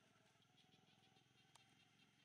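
Near silence: a faint buzz of insects in the background, with one soft click about one and a half seconds in.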